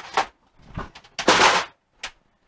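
Handling noise from a cast-iron Saginaw transmission case being turned and set on a steel workbench: a short knock, then about a second in a louder half-second scrape.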